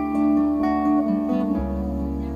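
Live folk band playing an instrumental bar between sung lines: strummed acoustic guitar over held bass notes, the bass moving to a new note about one and a half seconds in.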